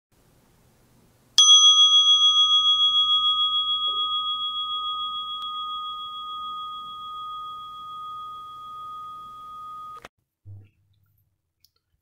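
A meditation bell struck once, ringing with a clear high tone that fades slowly with a gentle wobble in loudness. The ring is cut off abruptly about ten seconds in.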